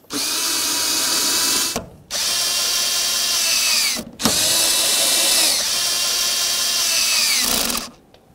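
Cordless drill/driver spinning a 7 mm socket to tighten the sill plate's mounting screws, in three runs of steady motor whine. The last run is the longest, and each run ends with the whine falling in pitch as the motor slows.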